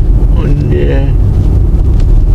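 Steady low rumble of tyre and road noise inside the cabin of a Mercedes E 300 de plug-in hybrid running on electric power, with its diesel engine off. Wind buffets the microphone.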